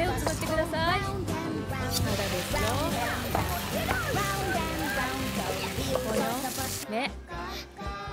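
Several videos' soundtracks playing at once: music and voices overlapping, with a steady hiss from about two seconds in until near the end.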